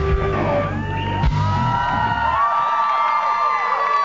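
Live rock band ending a song: two loud drum hits about a second apart over the last held chord, which dies away about halfway through. Over it the audience cheers, whistles and whoops.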